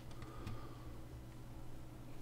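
Faint steady low hum of background room tone, with a few soft ticks in the first half.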